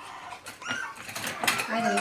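West Highland white terrier puppy whimpering faintly in a plastic pet carrier, in a few short, thin cries, with a sharp click from the carrier's wire door about halfway through.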